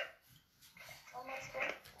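A faint voice coming through a phone's speaker, speaking for about a second from just over half a second in: the other party answering the call.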